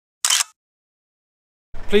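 Camera shutter click sound effect, once, about a quarter second in, in dead silence; near the end a man starts speaking over a low engine hum.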